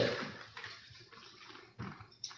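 A man's voice trailing off at the start, then quiet room tone picked up by the meeting-room microphones, with one short soft noise near the end.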